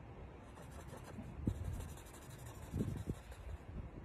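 Faint pen strokes on a board, with a few soft low knocks about one and a half and three seconds in.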